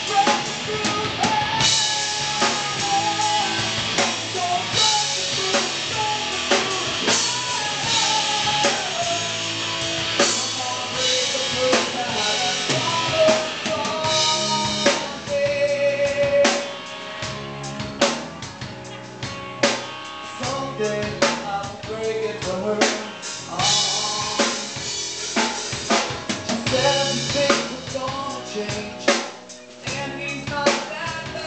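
Live band playing on stage, a full drum kit with bass drum and snare driving the beat under guitars. It thins out and drops in level for a few seconds in the middle, then builds back up.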